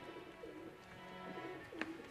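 Faint background music with a bird cooing twice, low and short.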